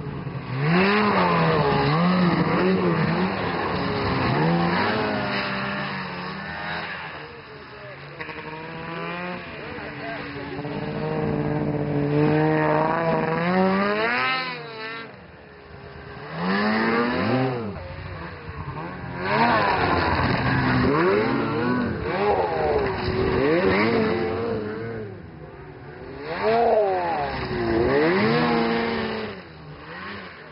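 Snowmobile engines revving up and down as the sleds pass close by, in several loud surges, with a sharp climb in pitch about fourteen seconds in.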